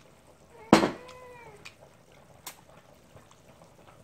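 A sharp glass clink from the soju bottle and shot glass, followed at once by a short meow that rises and falls for under a second. A lighter tap comes about halfway through.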